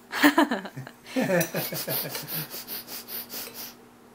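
Laughter: a short falling voiced sound, then a run of rhythmic laughing at about five pulses a second that stops near the end.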